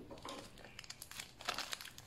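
Faint crinkling and crackling of the taped plastic bottle and plastic wrapping of a shipped plant being handled, a run of small irregular crackles.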